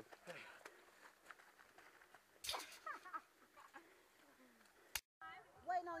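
Faint voices, with a short loud noisy burst and a brief shout-like sound about two and a half seconds in. Near the end there is a click and a moment of dead silence, then a man talking.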